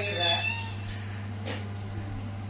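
A cat meowing once, briefly, at the start, over a steady low hum.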